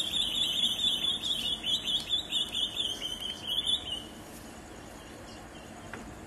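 A bird giving a fast, shrill trill of rapidly repeated high notes, which stops about four seconds in.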